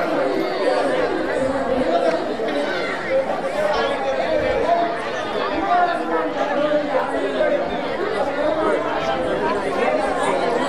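Many voices talking over one another in a steady chatter.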